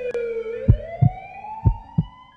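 Ambulance siren wailing in one long sweep, its pitch dipping and then climbing. Heavy low thumps sound under it, mostly in pairs, starting just under a second in.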